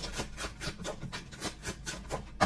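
Tarot cards being shuffled by hand: a quick, uneven run of papery flicks and rubs, about five a second.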